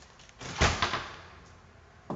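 A house front door swung and thudding, one heavy bump about half a second in with a second knock right after.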